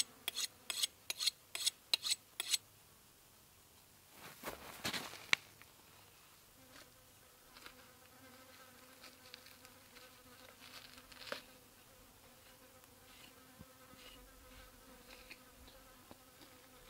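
A flying insect buzzing steadily near the microphone, starting about six and a half seconds in, around a freshly skinned goat carcass. Before it, a quick run of about seven short, sharp strokes in the first two and a half seconds and a brief rustle with a click around five seconds in.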